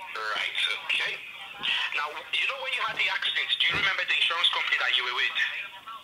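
Speech heard over a telephone line: a voice with a thin, narrow sound, quieter than the talk just before and after.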